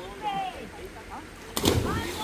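A person jumping from a bank into a river and hitting the water: one sudden splash about one and a half seconds in, the loudest sound, with faint voices before it.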